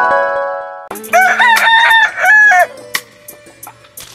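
A rooster crowing once, a cock-a-doodle-doo of nearly two seconds that starts about a second in, as a swell of music fades out just before it.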